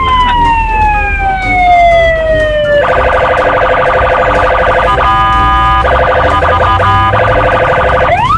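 Police patrol car's electronic siren: a rising whine that falls away slowly in a long wail, then about three seconds in switches to a rapid pulsing warble with a couple of short breaks, and starts rising again at the end. A low rumble sits underneath.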